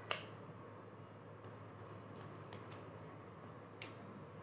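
Faint clicks and crinkles of a small plastic cream sachet being torn open and handled, with one sharper click just at the start and a few softer ones spread through.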